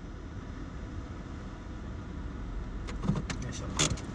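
Low, steady rumble inside a car's cabin as the car moves slowly, with a few short clicks near the end.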